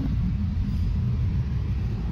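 Steady low rumble of a taxi on the move, heard from inside the cabin: engine and road noise.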